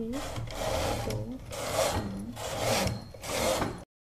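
Domestic flat-bed knitting machine carriage pushed back and forth across the needle bed, knitting plain rows of stockinette: a rasping slide on each pass, repeated several times with short pauses between strokes.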